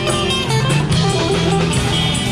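Live amplified band music: electric guitar over a drum kit and bass guitar, playing steadily.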